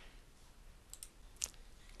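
Faint computer mouse clicks: a quick pair about a second in, then a sharper single click about half a second later, over low room tone.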